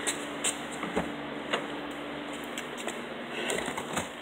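Driver's door of a 2013 Mitsubishi Lancer SE being opened and someone climbing into the driver's seat: a few light clicks and knocks about half a second apart, then rustling.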